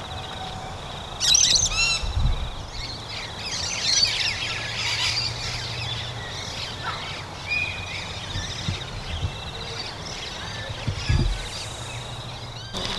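Wild birds chirping and calling, with a loud run of quick chirps about a second in and another flurry of calls around four to five seconds, over a steady high trill.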